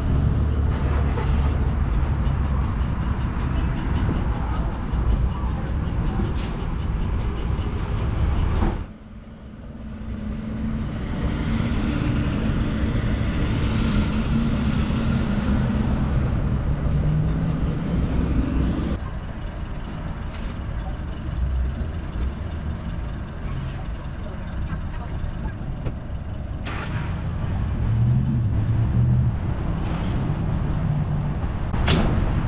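Car and traffic noise. A loud low rumble runs for the first several seconds, cuts off suddenly, and gives way to a quieter steady engine hum with a low pitch, with further abrupt changes later on.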